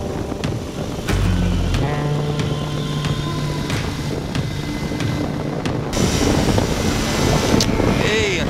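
Wind noise on the microphone over a flexwing microlight's Cors-Air Black Bull two-stroke engine and pusher propeller running in a descent. A low steady hum stands out from about a second in for a few seconds.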